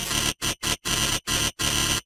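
Harsh, static-like distorted logo audio from a 'Preview 2'-style effects edit, a loud hiss chopped into stuttering bursts by abrupt dropouts several times a second.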